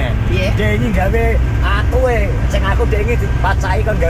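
People talking inside a moving car's cabin over a steady low rumble of road and engine noise.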